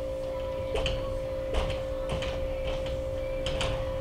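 Dry-erase marker squeaking and scratching on a whiteboard in a series of short strokes as a diagram is drawn, over a steady hum.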